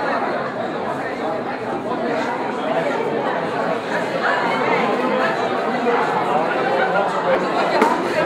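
Indistinct crowd chatter: many people talking at once, with a sharp click just before the end.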